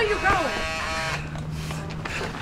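A voice calling out, its pitch bending and then held on one note, followed by a low steady hum from about halfway through.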